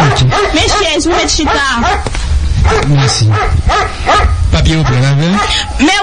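Lively voices talking and calling out, with dog-like barking among them.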